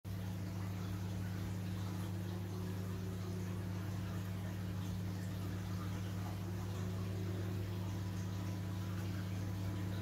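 Steady low hum of marine aquarium equipment running, with a faint wash of circulating water.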